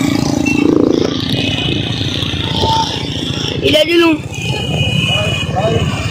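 Motor vehicle engine noise, a steady low rumble from traffic on the road close by, with a short burst of voices about four seconds in.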